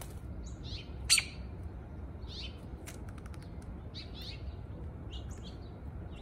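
Short, high bird chirps about once a second, with one sharp, loud click about a second in and a few faint ticks around three seconds. A steady low rumble runs underneath.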